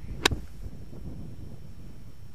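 A golf club striking the ball on a crisp short pitch shot: one sharp click about a quarter second in. Steady wind noise on the microphone.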